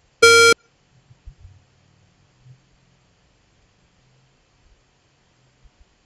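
A single short, loud electronic alert beep, about a third of a second long, rich in overtones: the pothole detector's warning sound, signalling that a pothole has been detected.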